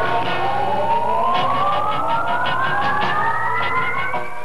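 A siren-like tone rising slowly and steadily in pitch over several seconds, over a steady low hum and a run of evenly spaced ticks from the film's soundtrack.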